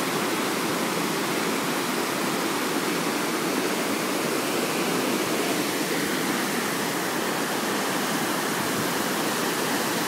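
Water pouring over a river weir: a steady, unbroken rush of white water.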